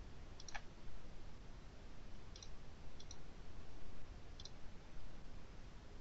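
A handful of short, sharp clicks from a computer mouse and keyboard, spaced a second or more apart, the strongest about half a second in, over a faint low room hum.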